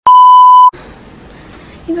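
A loud, steady, high-pitched test-tone beep of the kind played over television colour bars, lasting under a second and cutting off sharply, followed by faint room noise.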